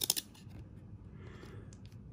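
A few quick clicks and snaps of thick glossy trading cards being slid off the top of a stack and moved to the back, with faint card rustling after.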